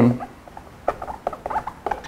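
Dry-erase marker writing on a whiteboard: a scatter of short squeaks and scratches as the tip moves over the board.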